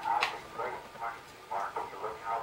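A woman's voice making a few short, quiet hums without words, with a light click near the start.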